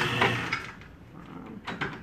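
A flatbed screen-printing press lifting its screen frame: a steady mechanical whir with a low hum that cuts off about half a second in, then a few light clicks near the end.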